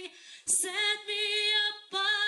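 A young woman singing unaccompanied into a microphone: slow phrases of long held notes with a light vibrato, broken by a short pause and a brief hiss about half a second in.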